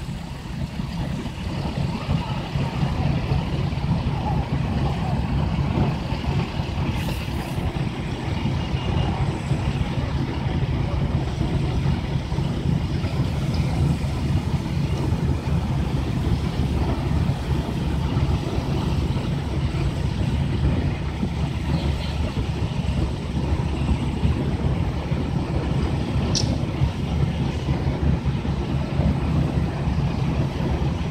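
Steady low drone of heavy diesel engines running, as from fire apparatus at a working fire.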